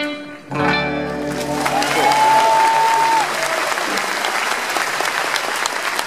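A rockabilly band of double bass, electric guitars and drums plays the final chord of a song, and from about a second in a concert audience applauds. A single long whistle rises out of the applause about two seconds in.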